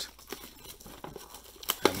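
A cardboard trading-card blaster box being torn open by hand, with plastic wrapping crinkling as the packs are pulled out: irregular small crackles and tearing.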